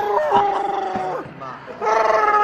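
A young man making a drawn-out vocal noise held on one steady pitch for about a second. A second held noise, higher and brighter, starts near the end.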